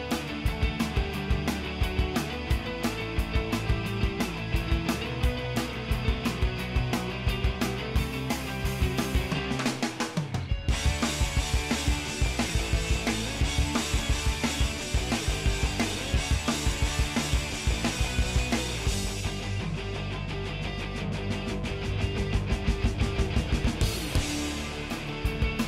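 Background music with a steady drum-kit beat, breaking off for a moment about ten seconds in.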